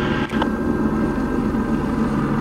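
Steady low drone of a vehicle engine idling, with a brief click about a third of a second in.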